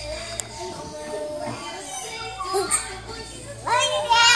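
Children's voices and play noise in a large, echoing gym hall, with music in the background. A single sharp click comes about half a second in, and a child's voice rises loudly near the end.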